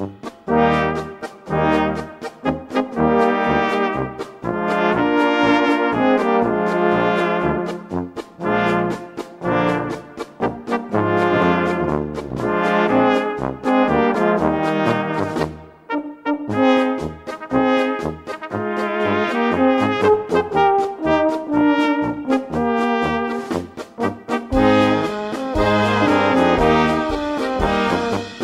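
A rotary-valve tenor horn playing its part live over a play-along recording of a small Egerländer-style brass band, with a steady bass line on the beat. The music dips briefly about two-thirds of the way through.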